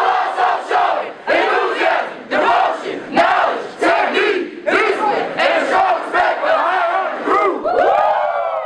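A group of voices shouting a chant together in a steady rhythm, one loud shout a little under every second, ending on a longer drawn-out shout.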